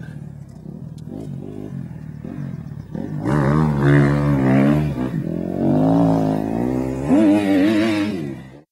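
Kawasaki KX250F motocross bike's four-stroke single-cylinder engine, faint for the first few seconds, then much louder from about three seconds in, revving up and down as it rides.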